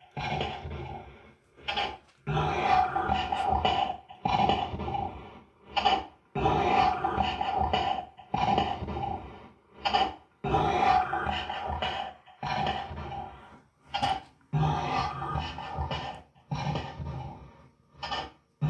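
A short, noisy electronic voice phenomenon (EVP) recording played back over and over through speakers, in bursts every one to two seconds with short gaps between. The recordist hears in it his late son saying "I am miserable without you, Dad."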